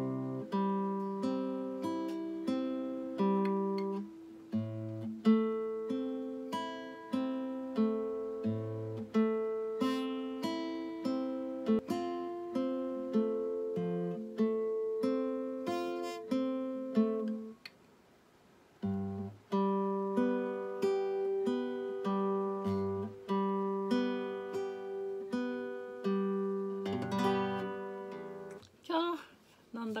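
Acoustic guitar fingerpicked in a slow arpeggio, one plucked note after another, each left ringing into the next. The picking stops briefly a little past halfway, then carries on.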